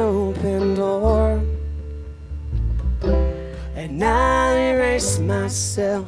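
Live acoustic country/bluegrass band: a woman's voice sings long held notes over upright bass, acoustic guitar and banjo. The voice drops out for about a second and a half in the middle while the bass carries on, then comes back.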